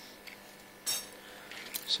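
A single brief, sharp clink of a small hard object being handled about a second in, over quiet room tone; a faint second tick comes near the end.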